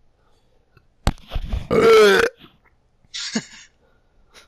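A person's loud non-speech vocal sound that starts suddenly about a second in and lasts about a second, its pitch falling. A short breathy sound follows about three seconds in.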